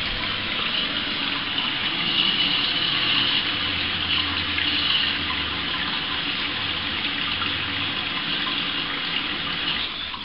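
Water running steadily through the toilet's cold-water supply. It cuts off near the end as the wall stopcock is turned off.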